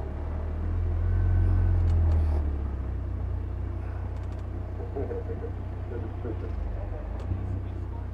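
The supercharged 2.0-litre Honda K20 four-cylinder engine of an Ariel Atom 3.5 running at low revs while the car moves slowly, heard from the open cockpit. It grows louder for about a second and a half, starting about a second in, then settles to a steady low note.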